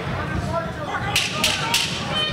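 Three sharp cracks about a third of a second apart, a little past a second in, over a murmur of crowd voices at a boxing ring.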